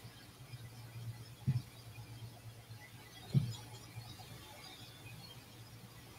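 Quiet pause with a faint steady low hum of room tone, broken by two brief soft knocks: one about a second and a half in, the other a little past the middle.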